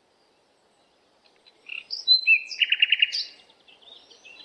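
Small birds chirping: silent at first, then, about one and a half seconds in, a few short high whistles and a quick trill of about five notes.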